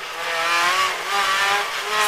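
Rally car engine heard from inside the cockpit, pulling in second gear, its pitch climbing slowly after a brief dip at the start, over a steady hiss.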